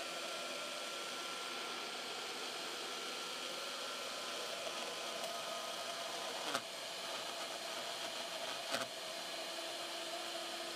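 Shaper Origin handheld CNC router spindle running steadily while its 8 mm long-reach bit cuts a pocket pass in open-grained oak. Two sharp clacks about two seconds apart, near the end, as the chippy oak catches and splinters under the bit.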